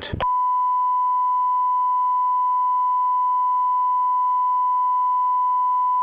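A steady electronic test tone at one unchanging pitch: the broadcast line-up tone sent out while the feed is on hold. It starts a moment in, right after a recorded station announcement ends.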